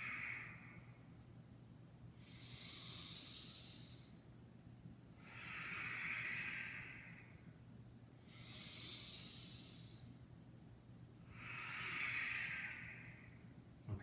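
A man's slow, audible paced breaths during a cat-cow yoga flow, through the nose and pursed lips. There are about five breaths, each about two seconds long and about three seconds apart, alternating between a lower and a higher breathy hiss.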